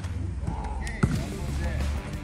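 A futsal ball struck by a foot: one sharp thud about a second in, with children's voices calling.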